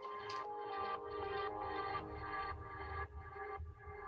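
Instrumental background music track playing back from a video-editing timeline, heard over a video call: a melody of short held notes over a bass line, thinning out and dropping away near the end as the video finishes.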